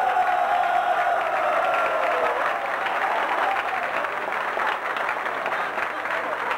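Crowd clapping hands in a dense, continuous round of applause. A long held high note rings over it for the first two seconds or so, sinking in pitch as it fades.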